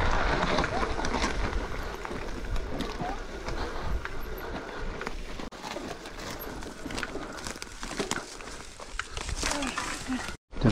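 Mountain bike running down a dirt trail: a steady rush of tyre and wind noise on the camera microphone, broken by frequent knocks and rattles from the bike. It is loudest in the first second.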